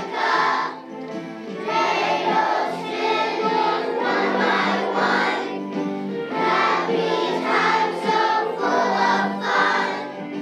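Children's choir singing, with a short break between phrases about a second in.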